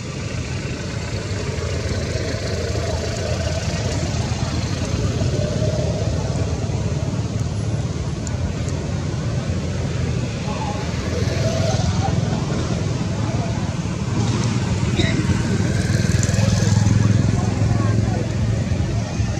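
Steady low rumbling background noise with indistinct voices, growing a little louder near the end.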